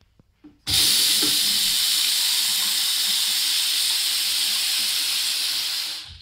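Water from a sink faucet running hard into a porcelain basin and splashing around the drain. It starts suddenly just under a second in, holds steady as an even hiss, and tapers off near the end.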